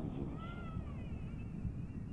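A single faint, high animal cry starting about a third of a second in, rising and then falling in pitch over less than a second, over a low steady background hum.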